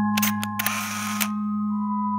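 Camera shutter sound effect: two quick clicks, then a short rasping burst about half a second long, over a sustained ambient music drone.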